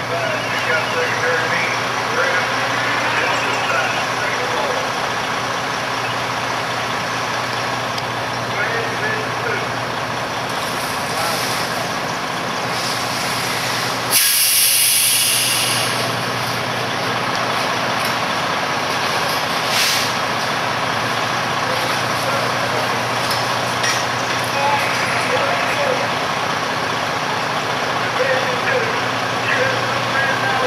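Fire apparatus engines running steadily at a fire scene, with a sudden loud hiss about halfway through that lasts a second or two.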